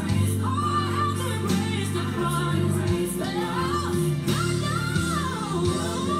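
Recorded gospel song: a woman's sung melody line with wavering, held notes over a band accompaniment with sustained bass notes and a light, regular beat.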